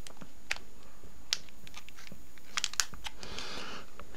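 Clear plastic packaging crinkling and a few sharp clicks as small white plastic charger parts, an AC adapter and its three-pin plug, are handled, with a longer spell of crinkling near the end.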